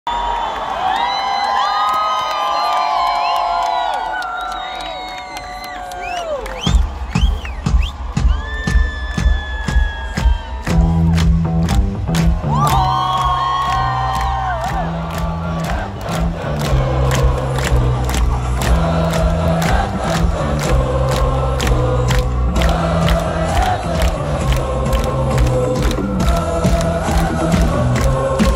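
Large festival crowd cheering and whooping. About seven seconds in, a live drum kit starts a steady beat of about two hits a second. Around eleven seconds in, a bass part joins it and it becomes loud live rock music over the festival PA.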